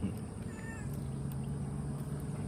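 A cat gives a short meow about half a second in.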